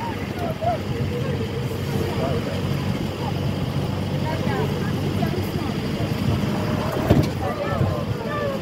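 Indistinct voices of people talking at a distance over a steady low rumble, with one sharp knock about seven seconds in.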